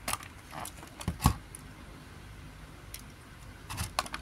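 A few light clicks and taps from a diecast model car being handled in its moulded plastic tray, the loudest about a second in and a quick run of clicks near the end.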